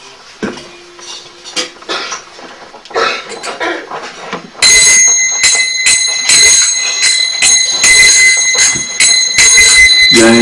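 Small brass hand cymbals (kartals), first clinking lightly as they are handled, then from about halfway struck in a steady rhythm of about two to three bright, ringing clashes a second.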